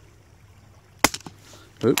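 One sharp crack from a scoped rifle about a second in, followed by a few lighter clicks.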